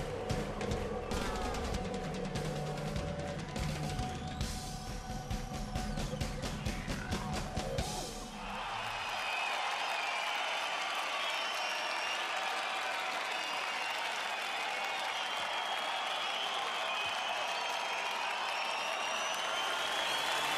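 A TV programme's intro music with a busy drum beat for about eight seconds, then a concert crowd cheering, clapping and whistling steadily.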